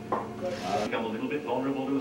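A single sharp knock just after the start, then a short burst of hiss, under a man's voice talking on television.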